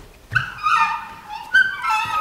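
Two high-pitched, dog-like whining cries, each falling in pitch, the second starting about a second and a half in.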